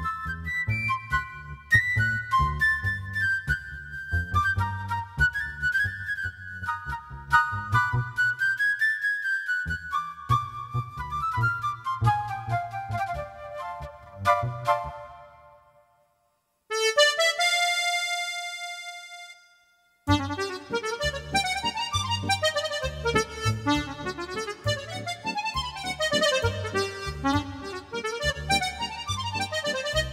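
MusicTech Music Maker 50 reedless digital accordion, heard through external speakers, playing a tune: right-hand melody over a steady left-hand bass and chord rhythm. The tune fades out about halfway through, a single held tone sounds for about three seconds, then a new passage starts in a different instrument voice.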